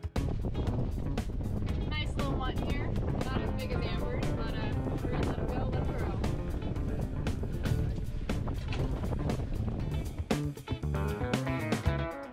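Background guitar music laid over the boat's own live sound: a steady wash of wind and water noise with indistinct voices. The music comes through more clearly near the end.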